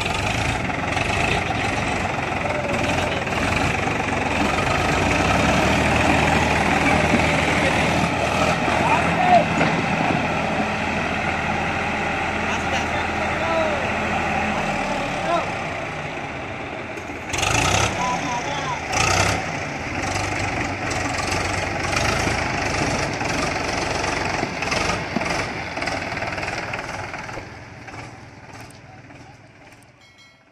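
Powertrac diesel tractor engines running under load while one tractor tows another out of deep mud on a rope, with people's voices over the engines. The steady engine note drops away about halfway through, two loud knocks follow shortly after, and the sound fades out near the end.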